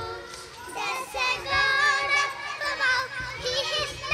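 Several young girls singing an action song together in chorus into stage microphones.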